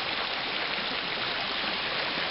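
Shallow stream running over rocks, a steady rush of water.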